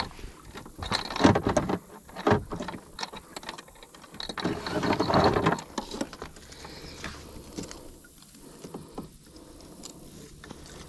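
Handling noise of fishing gear in a plastic kayak: a few sharp knocks and clicks in the first couple of seconds, a longer scraping rustle around the middle, then quieter scattered rustles.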